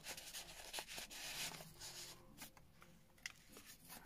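Faint rustling of paper as the pages and tucked cards of a handmade junk journal are handled and turned, with light scattered taps and clicks.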